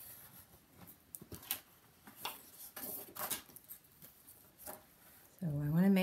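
Scattered light clicks, taps and paper rustles as patterned paper is positioned and cut on a sliding-blade paper trimmer.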